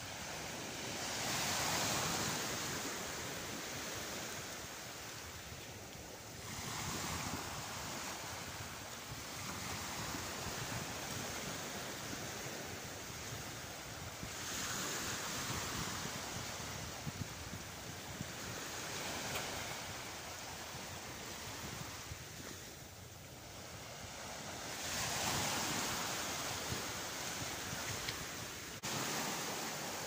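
Small waves breaking and washing up a sandy beach, the surf swelling and fading several times every few seconds.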